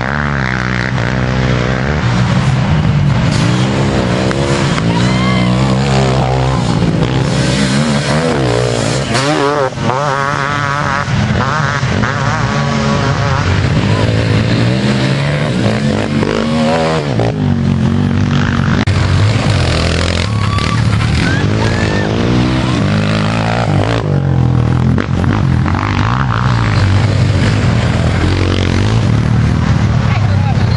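Youth racing quad (ATV) engines revving hard as riders pass along a dirt trail one after another, their pitch rising and falling over and over with the throttle and each pass, over a steady engine drone from quads further off.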